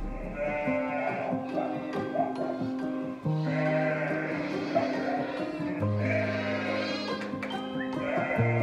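Background music with slow, held chords, over sheep bleating; several loud bleats stand out, about half a second, three seconds and six seconds in.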